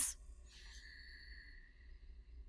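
A faint, steady high tone that comes in about half a second in and slowly fades away, over a low background hum.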